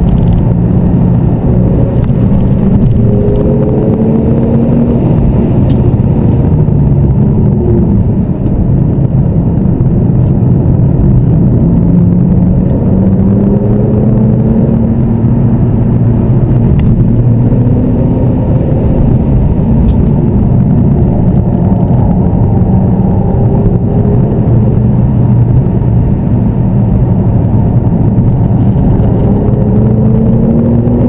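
Porsche 911 Turbo (997) twin-turbo flat-six heard from inside the cabin while lapping a race track, with tyre and road rumble underneath. The engine note rises in pitch several times as the car accelerates.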